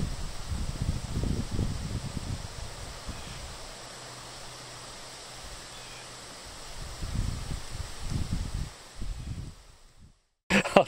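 Outdoor wind buffeting the microphone in low rumbling gusts over a steady hiss, calmer in the middle; it fades out near the end.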